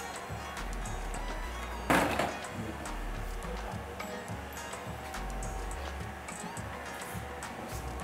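Background music with a moving bass line, and one short, sharp noise about two seconds in.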